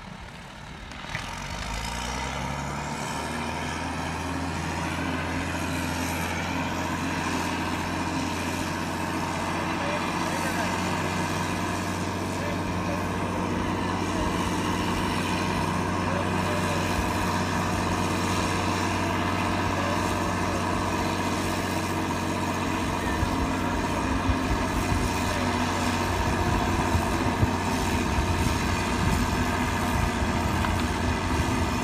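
Skagit BU-99 yarder's diesel engine revving up about a second or two in, then running steadily under load as it winches a turn of logs up the skyline.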